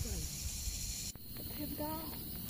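A steady, high-pitched chorus of night insects that cuts off abruptly about a second in, with faint, low voices underneath.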